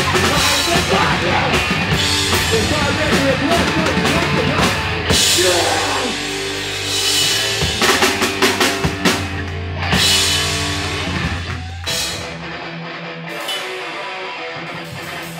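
Hardcore punk band playing live: electric guitars and a drum kit, with no singing. About twelve seconds in, the full band drops away to a quieter, thinner part without the deep low end.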